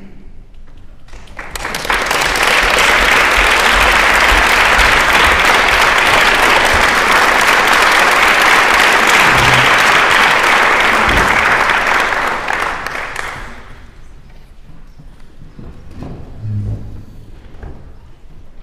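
Audience applause in a concert hall, swelling in a second or two in, holding steady for about ten seconds and dying away after about thirteen seconds, leaving a few soft thumps.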